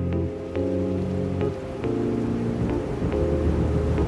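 Trailer soundtrack music of sustained chords that change every second or so, with a steady hiss laid over it and a few faint ticks.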